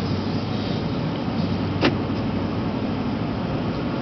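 Steady engine and road noise heard inside a moving car's cabin, with a low hum under it. A single short click about two seconds in.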